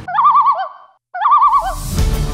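Common loon calling twice in quick succession: two wavering, quavering calls of about half a second each, with a short pause between them.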